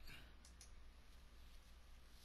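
Near silence: room tone, with a faint computer mouse click about half a second in.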